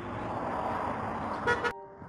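Outdoor road ambience, a steady noisy wash of traffic, with a short car-horn toot about one and a half seconds in. The sound then cuts off abruptly.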